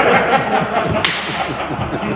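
A small group of men laughing and exclaiming in reaction to a punchline, with one sharp crack about a second in.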